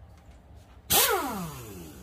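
Handheld Pittsburgh air tool fired in one short burst about a second in: a loud rush of air, then a whine that falls steadily in pitch as the motor spins down.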